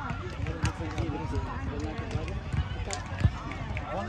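Background chatter of several people's voices on an open field, over a low irregular rumble, with a single sharp knock about three seconds in.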